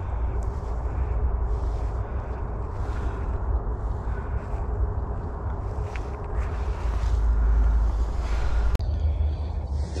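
Steady low rumble with rustling, of wind and handling noise on the microphone, swelling briefly near the end, with one sharp click just before the end.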